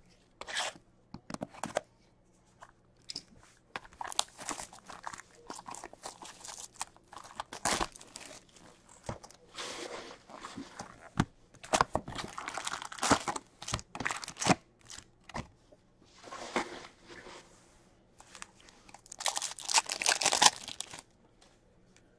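A cardboard hobby box of 2021-22 Upper Deck Series Two hockey cards being opened and its card packs torn open by hand. There is intermittent tearing and crinkling of the pack wrappers with light cardboard knocks and clicks, and the busiest crinkling comes near the end.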